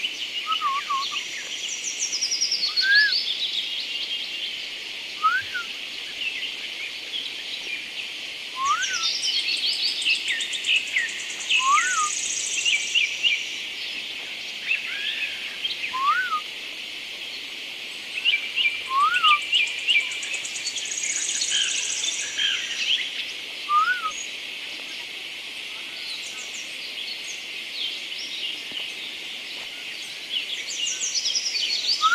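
Birds calling in woodland: a busy chorus of chirps and trills, with a short rising whistled note repeated every few seconds and a high buzzing trill heard twice.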